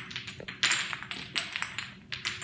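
Hanging glass spheres of a ceiling decoration knocking against each other as a hand brushes through them, a quick irregular run of light clinks like wind chimes.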